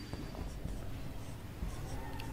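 Marker pen writing on a whiteboard: quiet scratching strokes as an arrow and the first letters of a word are written.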